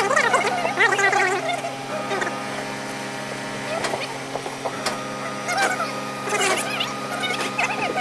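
Indistinct voices over a steady low machine hum, with a few light taps and knocks.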